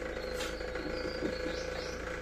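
A single sharp knock about half a second in, then a few faint high chirps, over a steady low hum.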